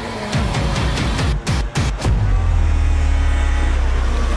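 Snowmobile engines revving as they pass, mixed with loud dramatic music with drum hits. A deep steady drone sets in about halfway.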